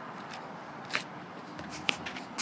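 Two footsteps on pavement about a second apart, over a steady background hiss.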